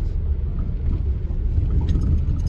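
Steady low rumble of a car driving through hurricane wind and rain, heard from inside the cabin, with a brief click near the end.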